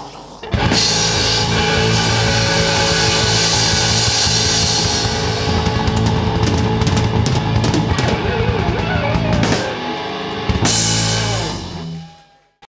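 Hard rock band playing loudly: distorted electric guitars, bass and drum kit with crashing cymbals, the song's closing bars. About ten and a half seconds in a last cymbal crash and chord ring out and are held.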